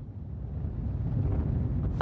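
Low, pitchless rumble of wind buffeting a microphone, growing steadily louder.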